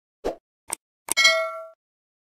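Subscribe-button animation sound effects: two short mouse clicks, then a third click with a bright bell ding that rings out for about half a second.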